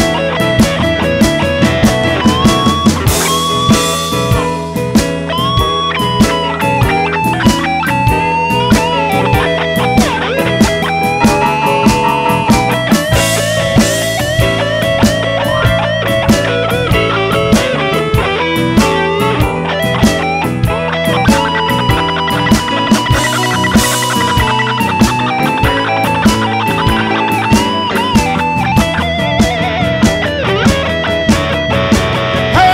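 Blues band instrumental break: a lead electric guitar solo with many bent notes, over bass and a steady drum beat.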